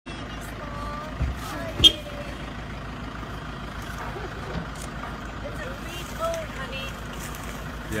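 A vehicle engine idling with a steady low rumble, and a sharp knock just under two seconds in.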